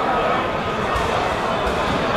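Crowd of spectators talking over one another, a steady hum of voices with no single voice standing out.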